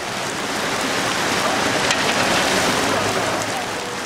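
Heavy rain pouring down steadily, an even hiss of rain on the wet road that swells a little in the middle.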